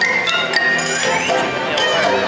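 Holiday parade music from the route's loudspeakers, with bright bell-like chime notes ringing out over it from the start.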